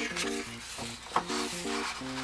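The paper pages of a hardcover picture book are turned by hand, rustling, with one sharp flick of paper about a second in. Soft plucked acoustic-guitar music plays underneath.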